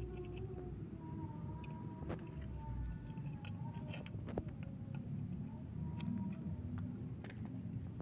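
Handling noise from a coaxial cable and a snap-off cutter knife: scattered sharp clicks and taps, four of them standing out, over a low background rumble with faint steady tones.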